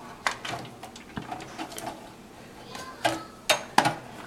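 Wires and plastic cable connectors being handled inside a metal PC case: light rustling and scattered small clicks, with three sharper clicks in the last second.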